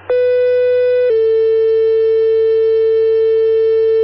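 Two-tone sequential paging alert over dispatch radio: one loud steady tone for about a second, then a slightly lower tone held for about three seconds, the tone pair that sets off the fire department's pagers.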